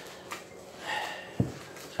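A plastic-gloved hand kneading a sticky coconut and condensed-milk mixture in a glass bowl, quiet handling and rustling, with a short thump about one and a half seconds in.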